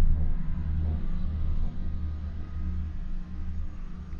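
Low, uneven rumble inside a moving cable car gondola as it travels up the line.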